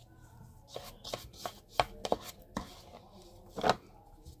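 A quick, irregular run of sharp taps and knocks from handling hair-dye tools: the applicator and comb being knocked and set down, with the plastic glove rustling. The knocks start about a second in, and the loudest come near the middle and near the end.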